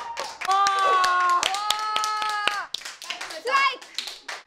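Several people clapping their hands in quick, uneven claps. Two long, steady held notes, like voices cheering, run over the claps from about half a second in until nearly three seconds.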